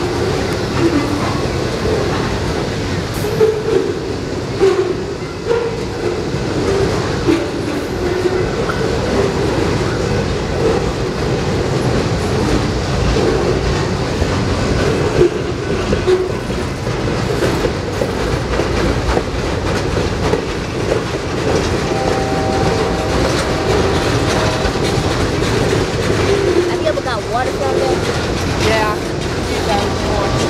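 Loaded railroad flatcars of a long freight train rolling past close by: a steady, loud rumble of steel wheels on rail with repeated clacks over the rail joints. A steady tone joins in about two-thirds of the way through.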